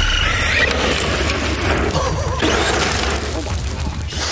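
Steady rushing noise with a strong low rumble, typical of wind on the microphone, over a Traxxas X-Maxx electric RC monster truck driving across gravel, its brushless motor whine faintly rising and falling in the middle.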